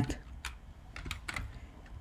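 A few light, scattered clicks of computer keyboard keys.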